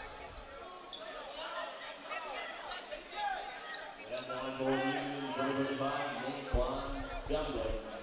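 Indistinct voices of players and spectators chattering over one another in an echoing gymnasium, with a low thump about six and a half seconds in.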